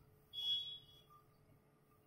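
A single short, high-pitched squeak of a cloth duster rubbing across a whiteboard, lasting about half a second.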